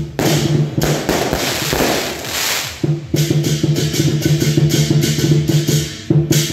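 Lion dance percussion ensemble of drum, gong and cymbals playing loudly: a dense rolling passage in the first half, then a fast steady beat from about three seconds in.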